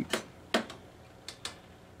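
A few short, light clicks, about four spread over two seconds, over a quiet room.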